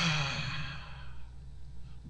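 A man's long, voiced sigh, an 'ah' that trails off over about a second.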